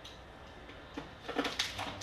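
Knife cutting into a plastic container of frozen chicken stock on a glass cutting board: a few short scrapes and clicks, starting about a second in.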